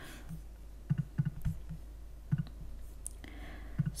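Scattered clicks of a computer keyboard and mouse, a few quick taps at a time.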